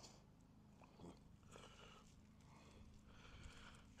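Near silence: faint low hum, with a faint tick about a second in and a few faint soft rustles later on.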